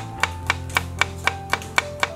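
Kitchen knife chopping garlic cloves on a wooden cutting board, sharp even strokes about four a second.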